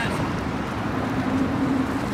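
Steady low rumble of outdoor background noise, with a steady hum-like tone coming in about halfway through.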